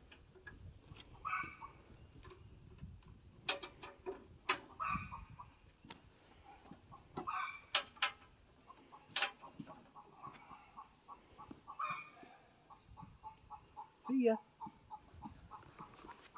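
A few sharp metallic clicks and knocks from hand work on a Woodland Mills HM122 bandsaw mill with its engine stopped, with short pitched calls, like an animal's or a voice, heard now and then between them.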